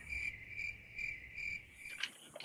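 Cricket chirping sound effect: a steady high chirp pulsing about three times a second that cuts off suddenly at the end. It is the comic "crickets" cue for an awkward blank moment.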